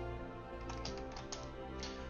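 Typing on a computer keyboard: irregular, quick key clicks over steady background music.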